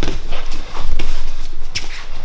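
Bare feet shuffling and slapping on a foam grappling mat, with a few sharp slaps and thuds as two grapplers grip-fight and one drops to sit on the mat.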